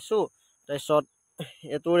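A man speaking in a few short phrases with brief pauses, over a faint steady high-pitched drone of insects.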